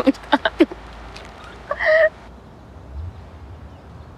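A woman laughing, a quick run of short ha's that dies away within the first second, then a brief high-pitched vocal sound about two seconds in. After that only a faint low outdoor rumble remains.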